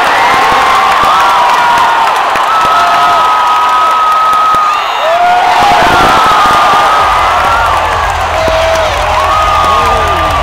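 Ballpark crowd cheering loudly as a run scores, with many individual yells and whoops rising and falling over the roar.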